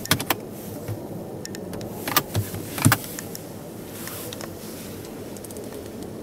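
Sharp plastic clicks and a soft thump from a car's centre-console armrest lid being handled: two clicks as it is released at the start, more clicks a little after two seconds, and a thump near three seconds as it shuts. Steady background hall noise throughout.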